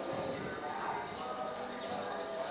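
Faint, distant voices over low background noise, with no loud sound in the foreground.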